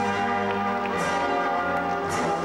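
Played-back music with bells struck about once a second, each strike ringing on over sustained tones.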